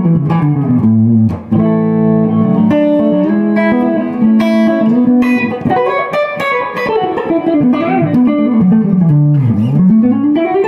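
1967 Gibson ES-335 electric guitar on its neck pickup, played clean with no effects through an original 1965 Fender Deluxe Reverb amp. Single-note lines, a chord held for about a second near the start, then fast runs sweeping down and back up.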